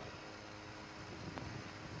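A pause in a speech: faint, steady background noise with a few faint held tones and a single faint tick, and no words.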